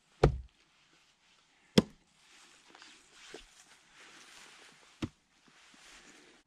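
Gränsfors Bruks large splitting axe striking wood on a chopping block: two heavy chops about a second and a half apart, then a lighter knock near the end.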